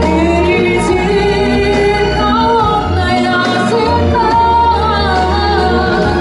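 A young female vocalist singing a song live into a handheld microphone, with long held notes over instrumental accompaniment with a steady bass.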